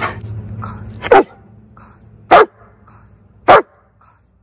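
A long-coated German Shepherd barks three times, single loud barks about a second apart, at an egg held out in front of it.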